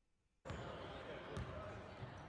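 A basketball bouncing on a hardwood gym floor amid the chatter of a crowd in a large, echoing gymnasium, starting about half a second in after a brief silence.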